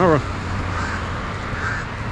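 A crow cawing twice, about a second apart, over steady outdoor street noise with a low hum.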